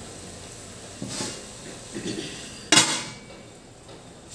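A stainless-steel lid being set onto a metal cooking pot: a couple of light metal knocks, then a louder clank with a short ring nearly three seconds in as the lid lands.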